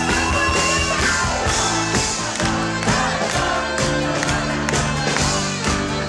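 Live band playing pop with a singer's voice over a steady drum beat, crowd noise mixed in, recorded loud on a camera's built-in microphone.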